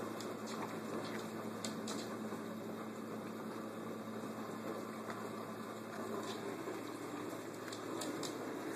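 Steady low hiss with a few faint, sharp clicks scattered through, as a husky sniffs and licks at leftover honeydew melon scraps on a hardwood floor.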